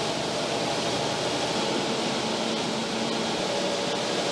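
Steady rushing noise inside a passenger train carriage, like its air-conditioning running, with a faint low hum under it.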